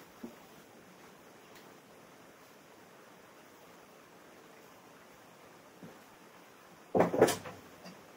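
Faint room hiss, then a brief clatter of two or three sharp knocks about seven seconds in.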